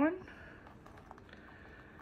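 Faint scratching and small ticks of fingertips and nails rubbing and picking at the paper layer of a dried glue photo transfer, with a thin, steady high tone underneath.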